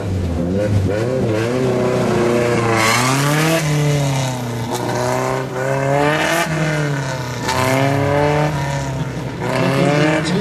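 Race car engine revving hard and lifting off over and over as the car accelerates and brakes through a cone slalom, its pitch climbing and dropping every second or so.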